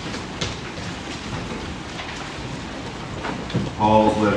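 Steady rustling of a congregation turning the thin pages of pew Bibles to find a passage, with a few light ticks. A man's voice begins just before the end.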